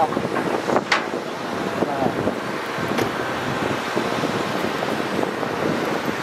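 Hitachi Zaxis 200 excavators' diesel engines running steadily as they dig and load dump trucks, with wind buffeting the microphone. A couple of sharp knocks, about one second and three seconds in.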